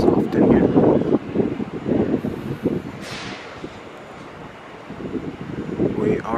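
JR electric commuter train pulling out of the station platform. Its running noise fades over the first few seconds, with a short falling hiss about three seconds in, and there is wind on the microphone.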